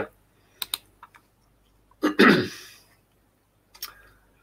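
A man clears his throat once, about two seconds in, with a few sharp clicks before and after it.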